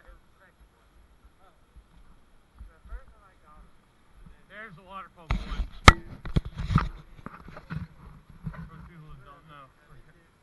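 Dry leaves crunching and rustling underfoot and against the camera, loudest from about five to eight seconds in, with one sharp knock near six seconds. Faint, distant voices can be heard in the quieter parts.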